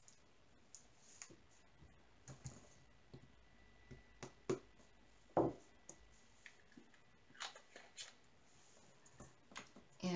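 Scattered light clicks and taps of small plastic diamond-painting drill pots being picked up, handled and set down. The loudest tap comes about five and a half seconds in.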